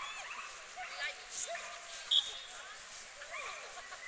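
Dogs yipping and barking in the background over distant chatter of voices, with one brief high chirp about two seconds in.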